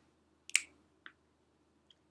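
A single sharp finger snap about half a second in, then a much fainter click a little after, in an otherwise near-silent pause between a cappella vocal lines.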